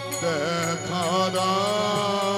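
Male kirtan singer singing a drawn-out, ornamented devotional melody, his voice bending up and down in slow turns over a steady held drone.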